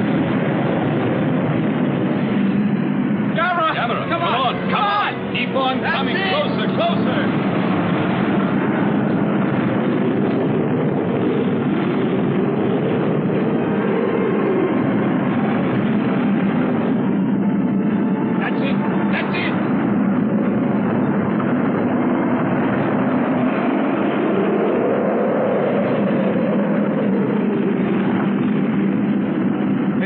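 Monster-movie soundtrack of fire and explosions: a loud, steady rumble with short wavering cries about four seconds in and again near nineteen seconds. The sound is dull and muffled, cut off above about 4 kHz, as on an old videotape copy.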